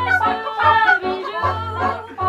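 A group of women singing a song together in several voices, with low bass notes underneath that come in short, repeated blocks.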